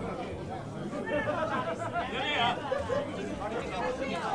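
Overlapping chatter of many voices in a large hall, several people talking at once with no one voice standing out.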